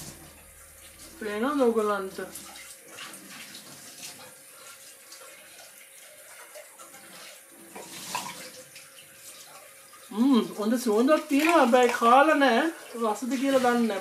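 Wordless vocalising with a swooping pitch, briefly near the start and again for a few seconds near the end, with a faint steady hiss between.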